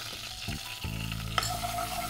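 Wooden spatula stirring and scraping a dressing of oil, mustard and seasonings in a non-stick pan, with a light sizzle from the warm oil. A single sharp knock comes about a second and a half in.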